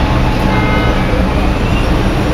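Steady low rumble of city street traffic, with a faint high whine about half a second in that lasts roughly a second.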